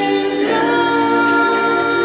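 A man singing into a handheld microphone. About half a second in he starts one long, steady held note, sung over sustained backing chords.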